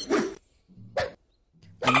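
A man's voice giving two short, bark-like cries of pain, the cartoon monkey reacting to being yanked by its leash.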